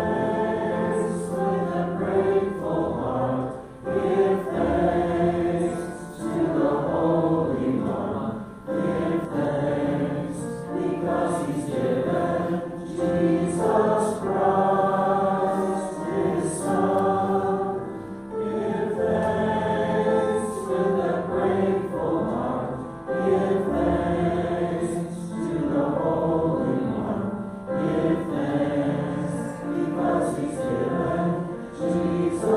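A hymn sung by several voices together, with acoustic guitar and Roland keyboard accompaniment, in sustained sung phrases.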